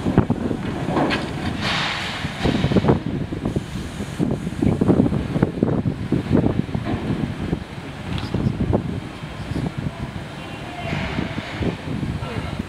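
Wind buffeting the microphone over irregular knocking and rumbling from a working yard with a livestock truck.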